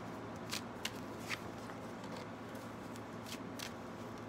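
Tarot cards being handled and shuffled, heard as a handful of sharp, separate card snaps and flicks at uneven intervals.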